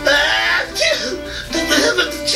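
Cartoon soundtrack: background music with animated characters' voices and giggles, no clear words.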